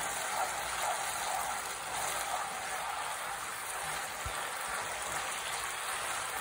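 Spaghetti sizzling in a pan of olive oil and starchy pasta water, a steady hiss as it is tossed with tongs while it finishes cooking in the pan.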